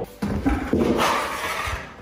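Long-handled flat squeegee blade scraping thick, cold epoxy patch paste across a wood subfloor, a rough scrape that swells about a second in and fades near the end.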